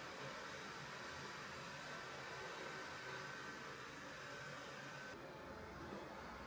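Faint, steady room-tone hiss with no distinct event in it. The background noise changes abruptly about five seconds in.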